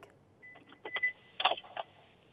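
A telephone line to a remote caller opening: a faint high beep and a few short crackling bursts, then a steady hiss on the line.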